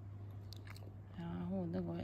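A small terrier chewing close to the microphone, soft short crunching ticks over a steady low hum. A woman's voice comes in about a second and a half in.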